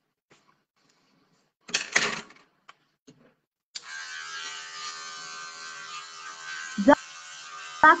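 An electric hair clipper switches on about four seconds in and runs with a steady motor hum as it trims the back of a client's neck.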